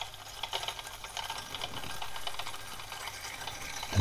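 Magnetic stirrer spinning a stir bar in a glass Erlenmeyer flask of menthol crystals and spirit: soft swishing of the liquid with light, irregular clicks of crystals against the glass.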